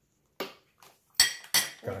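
A spoon clinking against a bowl, about four sharp clinks, as a big spoonful of cocoa powder is scooped and added.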